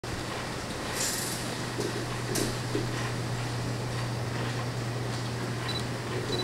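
A steady low electrical hum, with two brief hissy rustles, about a second in and again near two and a half seconds.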